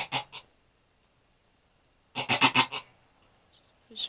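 Doe goat in labor bleating: a short, broken call right at the start and a louder, wavering call a little after two seconds in.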